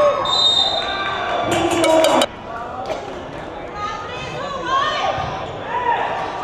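A volleyball bouncing several times on an indoor court, with voices echoing in the hall; the sound drops off abruptly after about two seconds.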